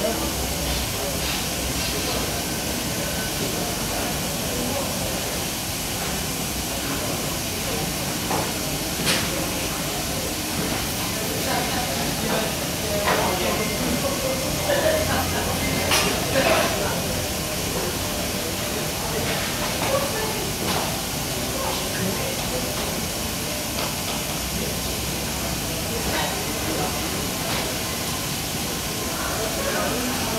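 A steady hiss, with scattered light clicks and knocks of hands working a small sampling valve and bottle, and faint voices in the background.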